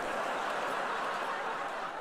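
Studio audience laughing together, a steady wash of many voices.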